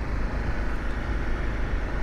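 Riding noise from a Honda CRF250L dual-sport motorcycle under way: a steady rush of wind over the helmet-mounted camera's microphone, with a low rumble underneath.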